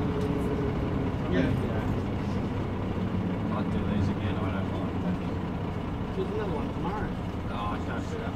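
A MAN city bus's engine running as the bus approaches slowly and draws close, its low hum growing stronger through the middle, over street traffic noise.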